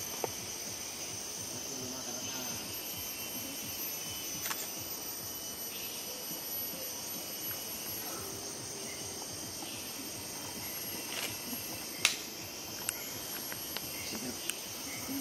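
Steady high-pitched drone of forest insects. A sharp click about twelve seconds in is the loudest moment, with a few softer clicks elsewhere.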